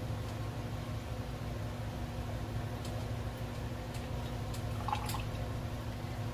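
White wine being poured from a glass bottle into a stemmed wine glass, a faint trickle of liquid over a steady low hum, with a few light clicks.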